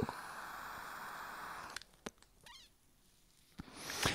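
Faint steady background hiss that cuts off about two seconds in, followed by near silence with one brief faint squeak.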